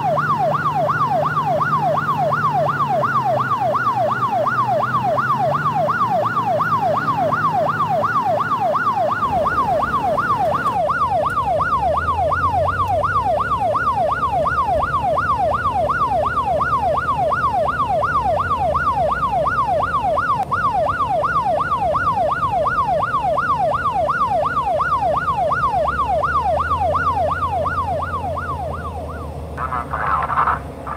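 Electronic emergency siren in fast yelp mode, its pitch sweeping up and down about three times a second, easing off slightly near the end.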